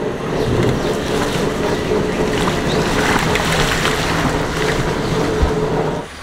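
A car moving slowly past at close range on a rough, muddy road, its engine running steadily under noise from the tyres and wind on the microphone. There is a brief thump about five seconds in.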